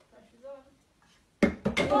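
A quick cluster of sharp plastic clacks about a second and a half in: small toy blocks clattering against a plastic shape-sorter and bucket. Before it, one brief faint voiced sound.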